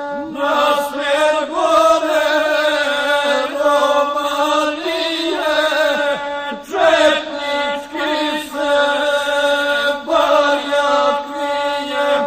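Gusle, the single-string bowed Balkan fiddle, playing a steady nasal tone, with chant-like epic singing in short repeated phrases over it.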